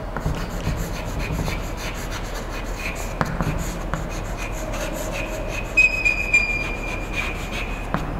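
Chalk writing on a blackboard: a run of short scratchy strokes and taps, with a high thin chalk squeak over the last couple of seconds.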